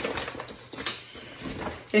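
Plastic baby bottles of breastmilk being picked up and handled, with a few light knocks and rustling.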